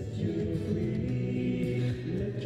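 Hymn sung by voices at a slow pace, each note held before moving to the next.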